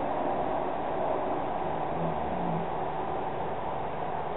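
Steady background hiss of room noise, with no distinct event standing out.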